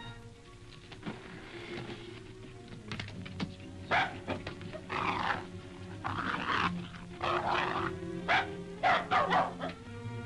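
A small dog barking repeatedly in short, sharp yaps, starting about four seconds in and coming faster towards the end, over background film music.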